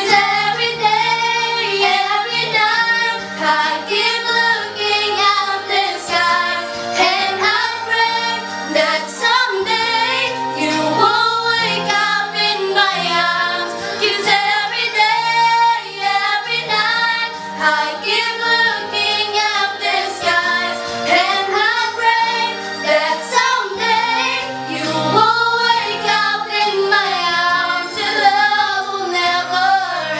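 Three teenage girls singing a song together.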